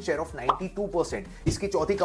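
A man talking, with a sharp click about one and a half seconds in.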